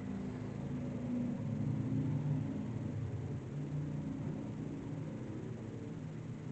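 Low rumble of road traffic heard from indoors, swelling over the first couple of seconds and then holding steady.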